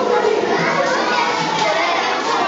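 Many voices chattering at once, children's voices among them, as a steady hubbub.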